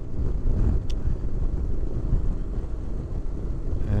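Honda NC750X motorcycle cruising at steady speed: a steady low rumble of wind on the microphone and road noise, with one faint tick about a second in.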